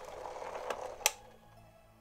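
Citroen C5 instrument cluster powering up on the bench: a brief mechanical whir with small clicks, ending in a sharp click about a second in, over faint background music.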